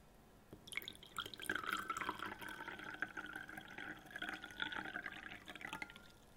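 Water poured from a glass bottle into a drinking glass, a steady pour into the glass. It starts about a second in and stops just before the end.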